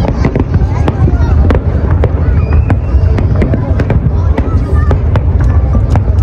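Aerial fireworks display: many irregular bangs and crackles of bursting shells in quick succession over a steady low rumble.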